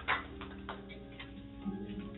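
Soft held organ notes, a few steady tones sounding together, with a few faint light ticks.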